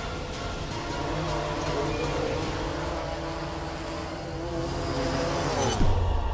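Whirring quadcopter motors with a wavering pitch over music as the drone lifts off; near the end a steep falling sweep ends in a loud hit.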